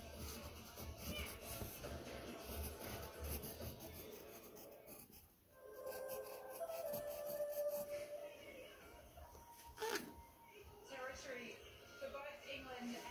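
Pencil scratching across sketchpad paper in short strokes, mostly in the first five seconds, under faint television speech and music. A single sharp click near the end.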